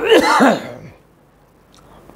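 A man's single short cough, clearing his throat: one harsh burst in the first half-second, then quiet.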